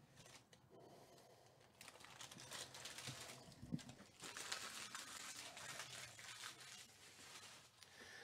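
Faint rustling and crinkling of trading cards and their foil pack wrappers being handled, starting about two seconds in.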